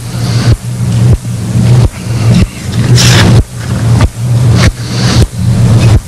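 A steady low hum with hiss, swelling and dropping in loudness about every half second to a second.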